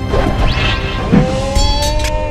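Dubbed fight-scene sound effects over action music: a whoosh, then a hard hit about a second in, then sharp high strikes near the end, laid on for thrown ninja stars and a sword swing.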